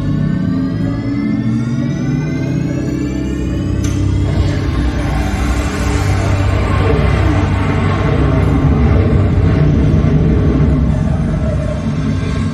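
Sci-fi show soundtrack from the attraction's sound system: slowly rising synth tones build for about four seconds, then a sudden loud, rumbling whoosh sets in and swells as the show starts.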